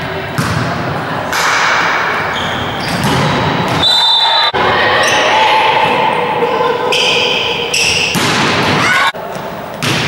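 Live indoor volleyball play: the ball being struck, with several hits, amid players shouting and calling to each other, echoing in a sports hall. The sound changes abruptly a couple of times as the clip jumps between rallies.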